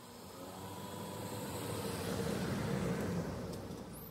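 A car passing by on the paved road: its tyre and engine noise swells to a peak about three seconds in and then fades.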